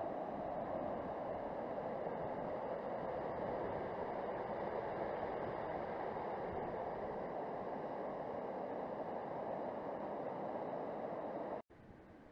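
Fast-flowing river rapids running high, a steady rush of water. It cuts off abruptly near the end, leaving a much quieter background.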